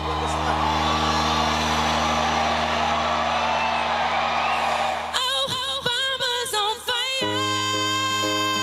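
A crowd cheering over a held low note. About five seconds in, a woman starts singing with a wavering voice, and a second or two later a piano chord comes in and is held under her singing.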